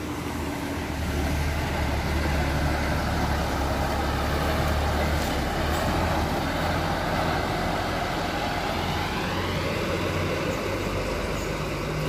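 Diesel engine of a Garuda Mas intercity bus pulling past close by and driving away, a steady low rumble with road noise. A whine climbs in pitch about two thirds of the way through.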